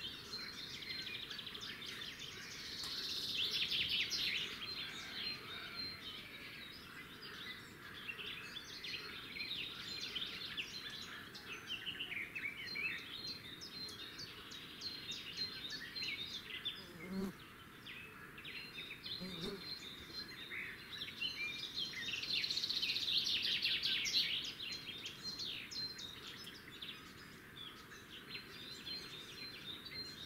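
Small birds chirping and twittering in a dense, high chorus that swells into two louder bursts of rapid twittering, one a few seconds in and one about two-thirds of the way through.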